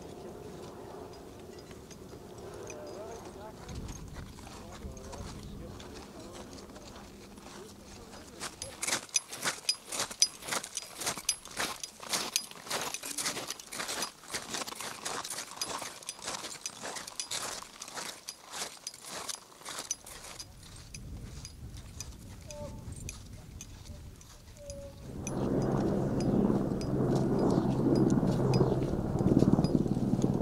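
Crampon footsteps crunching in firm snow, several a second, from several seconds in until about two-thirds through. Near the end a louder, low, steady rumble with a hum sets in.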